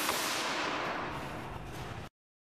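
Steady rushing hiss just after an airbag module's deployment bang, slowly fading as the highs drop away.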